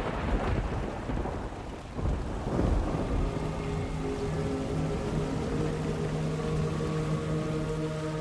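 Dramatic background score: a low rumbling noise swell that fades over the first few seconds, then a sustained droning chord from about three seconds in.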